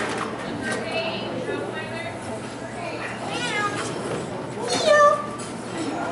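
A woman's high, sing-song voice cheering on a dog in short calls that slide down in pitch, the loudest about five seconds in.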